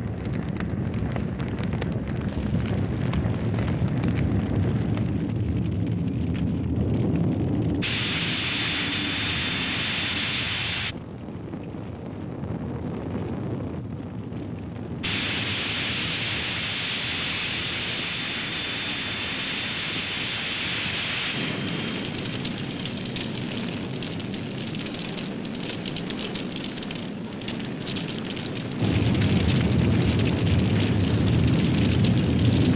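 Sound effects of a large fire: a continuous low rumble with crackling. It is broken twice by stretches of loud, high hissing that start and stop abruptly, and the rumble swells near the end.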